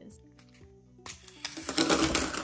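Plastic lead refill case sliding open and a handful of 2 mm graphite leads rattling out and clattering onto paper, a dense run of clicks that starts about a second in and gets louder toward the end.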